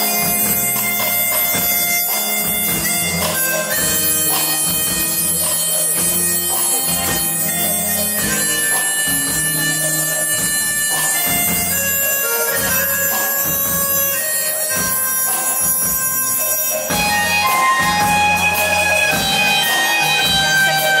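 Live band playing an instrumental interlude: a sustained lead melody line, likely from the keyboard, over bass guitar and a steady drum beat, with no singing.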